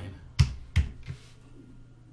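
Computer keyboard keys clicking as a number is typed in: two sharp clicks in the first second and a fainter third just after.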